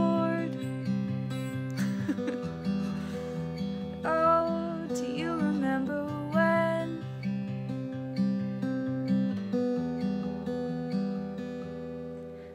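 Acoustic guitar played in a steady picked-and-strummed chord pattern, with a woman's voice singing a few brief notes in the first half. The guitar thins out near the end.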